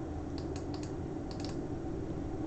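Light clicks on a computer keyboard, in three quick pairs, while an image is being picked on screen, over a steady low hum.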